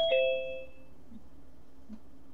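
Zoom's participant-join chime: a two-note descending ding-dong that fades within about a second, signalling a new participant entering the meeting.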